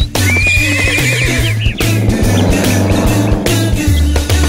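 Upbeat background music with a steady bass beat, with a horse whinny sound effect laid over it, a wavering high neigh beginning just after the start.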